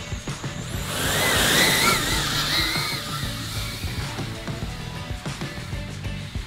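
FPV quadcopter motors and propellers whining as the drone takes off, the pitch wavering up and down with the throttle, loudest from about one to three seconds in, over background music.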